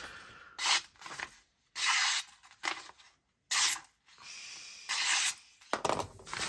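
A small folding knife's S35VN steel blade slicing through a hand-held sheet of printer paper in several short strokes with brief pauses between them: a sharpness test of the edge.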